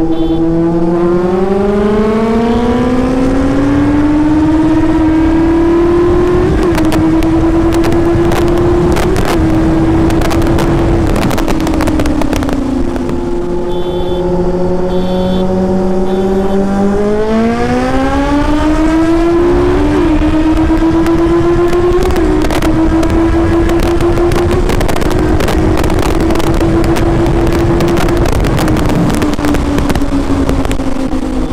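Kawasaki Z800 motorcycle's inline-four engine pulling hard in third gear, the revs climbing steadily for several seconds and holding high, then dropping off as the throttle closes. A second pull follows about sixteen seconds in, with the revs rising again and holding before falling near the end. Heavy wind noise buffets the microphone throughout.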